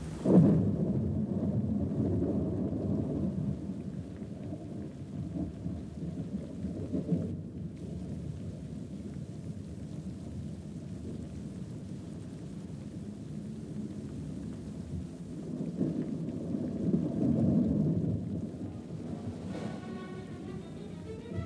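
Thunder rumbling, starting with a sudden loud clap just after the start, dying down, then swelling again about seven seconds in and more strongly near the end.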